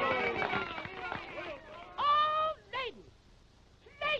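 Wordless cartoon voices on an early sound-cartoon track: a busy jumble of cries and gliding calls that thins out, then a high held cry about two seconds in and a short one just after.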